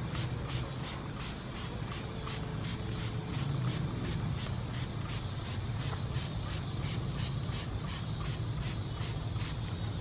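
Steady low hum with a fast, even high-pitched ticking, about three ticks a second, under faint handling sounds.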